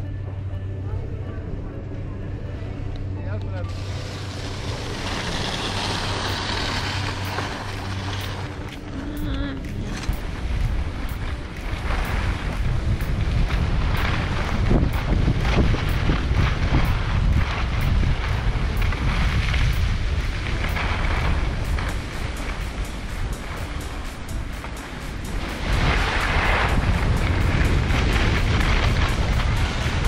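Wind buffeting the camera microphone and skis scraping over groomed snow on a downhill run. The sound builds after the first few seconds and swells with each turn.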